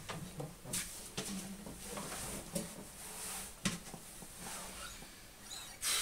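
Soft rustling with a few light knocks and clicks, handling noise as an acoustic guitar is picked up and settled into playing position.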